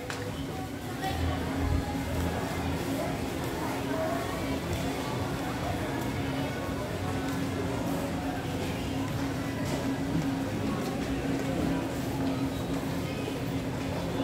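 Busy supermarket background: indistinct shoppers' chatter and faint store music over a steady low hum.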